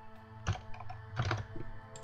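Computer keyboard typing in scattered key clicks, the sharpest about half a second and a second and a quarter in, over soft steady background music.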